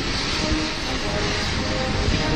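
A steady rush of rain and wind noise on the microphone, with a military band faintly playing a national anthem beneath it.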